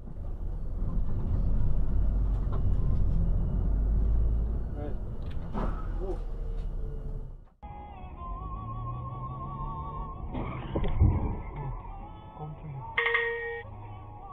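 Dashcam sound from inside a moving car: a steady low engine and road rumble. About halfway through it breaks off suddenly into a second recording with music or voices playing in the cabin, a loud sudden noise about three-quarters of the way in, and a short tone near the end.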